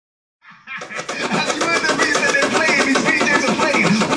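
Hip hop music with turntable scratching, starting suddenly about half a second in over a fast, dense beat.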